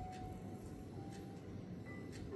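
Soft, slow background music of a few long held notes, over a low, faint rustle of hands kneading oiled skin on the neck and shoulders.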